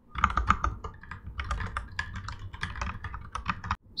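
Typing on a computer keyboard: a quick, irregular run of key clicks that stops shortly before the end.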